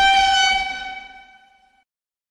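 A single sustained horn-like tone, loudest at the start, that fades out over about a second and a half.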